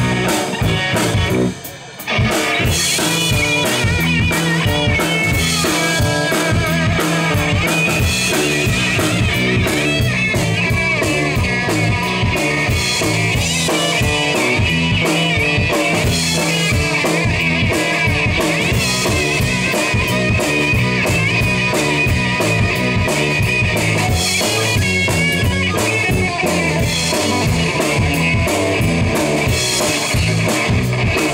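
Live blues-rock band playing an instrumental passage: an electric guitar plays over bass guitar and a drum kit. The band drops out briefly about one and a half seconds in, then comes back in.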